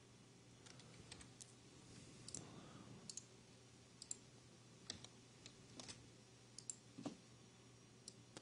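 Faint, irregular clicking of a computer mouse, roughly one click a second, over near-silent room tone with a low steady hum.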